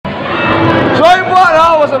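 Mostly speech: a man's voice starting a loud greeting about a second in, over a busy background of room noise.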